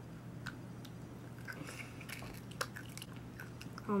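A person chewing candy-coated chocolate sunflower seeds, with a few short, sharp crunches.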